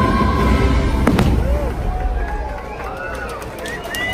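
Aerial fireworks bursting overhead: deep rumbling booms, one sharp crack about a second in, and a few lighter cracks near the end.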